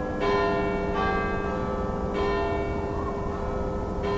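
A large bell tolling slowly, three strikes roughly a second apart, each ringing on and fading under the next: a clock striking midnight.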